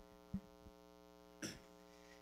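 Low, steady electrical hum from a handheld microphone and sound system. It is broken by a short thump about a third of a second in and a brief click near the end, as the microphone is handled while being passed from one hand to another.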